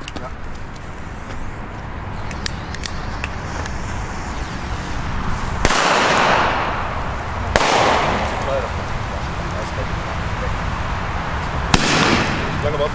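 Two loud China-Böller firecracker bangs about two seconds apart, each followed by a long fading echo, with a short sharp crack near the end.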